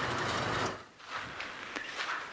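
Open safari vehicle driving on a dirt track, a steady engine and rattling noise that cuts off suddenly just under a second in. A quieter outdoor background with a few faint ticks follows.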